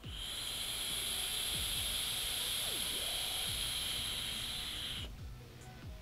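Long draw on an Aspire EVO75 vape with its 0.4-ohm coil firing: a steady airy hiss that stops abruptly about five seconds in.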